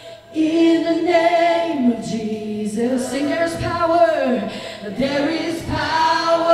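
A woman leading congregational worship singing, with other voices joining, in long held notes that slide between pitches.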